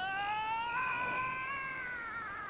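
A long, drawn-out cartoon cry from an animated character, held on one wavering note for about three seconds. It rises at the start and sags slightly near the end.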